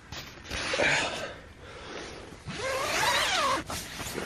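A tent door zip pulled in two long strokes, the second with a rising-then-falling whirr, with nylon tent fabric rustling.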